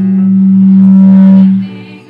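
A choir with electronic keyboard accompaniment holds one loud, steady low note that swells and then cuts off about a second and a half in. Softer singing follows.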